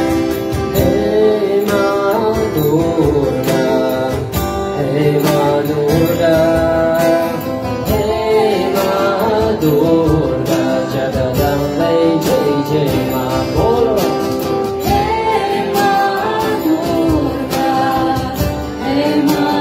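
Live kirtan: a man and a woman singing a devotional chant together over two strummed acoustic guitars.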